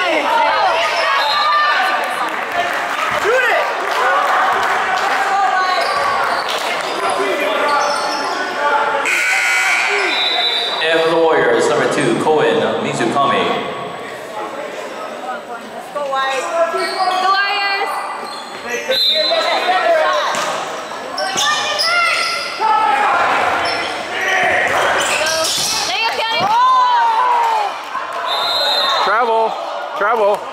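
Sound of a high school basketball game in a gymnasium: a basketball bouncing on the hardwood under a continuous din of spectators and players shouting and calling out. A referee's whistle blows briefly about ten seconds in and again near the end.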